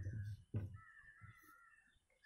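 Faint cawing of a crow, with two dull knocks near the start.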